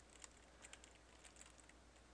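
Faint computer keyboard typing: a quick run of light key clicks as the command "javac Tutorial.java" is typed.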